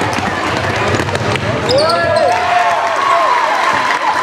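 Basketball being dribbled on a hardwood gym floor, with voices shouting from the crowd and bench over the steady noise of a packed gym.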